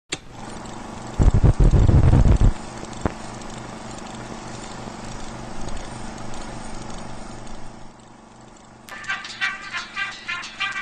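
Old film projector running: a steady hiss and whir with a regular low flutter, broken a little over a second in by a loud low rumble that lasts about a second. Music starts near the end.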